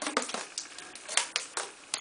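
Black vinyl electrician's tape being peeled and unwound from a plastic fan assembly, giving a string of irregular crackles and ticks.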